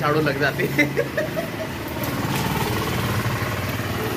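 A motor vehicle's engine running steadily close by, taking over from about a second in, with voices talking over the first second.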